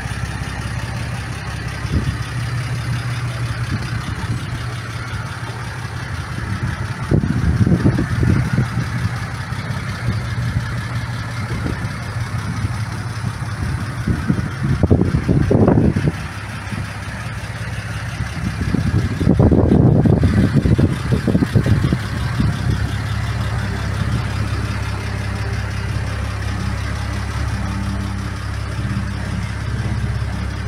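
IKA Torino's straight-six engine idling steadily, with three louder swells about seven, fifteen and twenty seconds in.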